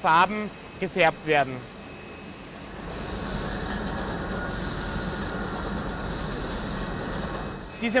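Paint nozzles of an egg-colouring machine spraying in hissing bursts, about one every second and a half, over the steady running noise of the machine.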